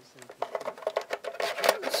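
Light plastic clicks and rattles of 3.5-inch floppy disks being pushed into and latched in the slots of a spring-loaded plastic diskette holder, several sharp clicks in quick succession.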